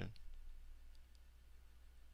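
A few faint clicks from a computer mouse over a low steady hum.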